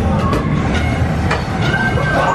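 A multi-ring gyroscope ride spinning with riders aboard: a steady low mechanical rumble with scattered rattling clicks from the rings and frame.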